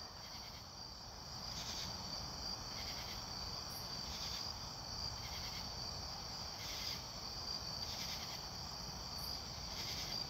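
A steady chorus of night insects: a continuous high-pitched trill, with softer chirps coming and going over it.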